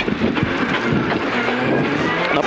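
Rally car engine running hard on a gravel stage, with a steady engine note over tyre and wind noise and scattered clicks of gravel.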